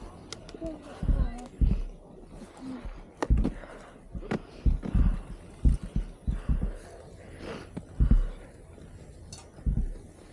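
Irregular low thumps and rustling on a camera carried by a skier, with short breathy vocal sounds between them.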